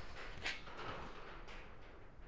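Quiet workshop room tone, with one faint, brief noise about half a second in.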